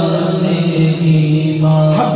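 A man singing an Urdu naat unaccompanied, his line settling into one long held note that stops just before the end.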